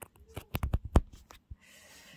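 Close handling clatter of a phone and its charging cable being plugged in: a quick run of clicks and knocks, the loudest about a second in, and one more shortly after.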